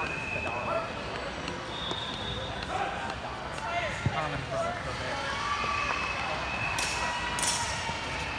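Murmur of background voices in a large sports hall, with a few short high squeaks and a single sharp knock about four seconds in.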